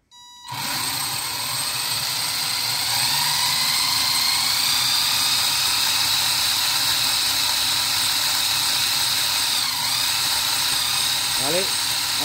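RC car's Traxxas electric motor and gear drivetrain spinning the wheels free on a stand, powered by a 7.2 V NiMH pack: a steady high whine that climbs in pitch over the first few seconds as the throttle comes up, then holds, with a brief dip near the end. A short beep sounds at the very start.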